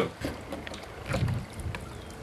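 Oars pulling through calm water as a small wooden lapstrake rowboat is rowed, with a few soft ticks from the stroke and some wind on the microphone.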